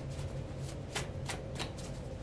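Tarot cards being shuffled by hand: a series of separate, crisp card snaps at irregular intervals, several a second.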